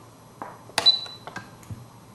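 Spektrum DX7SE radio-control transmitter being switched on with two buttons held down to enter its system menu: a light click about half a second in, then a sharper click of the power switch followed by a short high beep from the transmitter, then a few faint button clicks.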